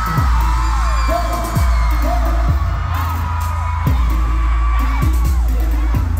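Loud live K-pop concert music through an arena sound system: a beat of deep bass hits that drop sharply in pitch, about five in a few seconds, under held high tones.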